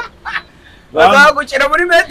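Loud laughter in a high, wavering voice, starting about a second in after a brief lull.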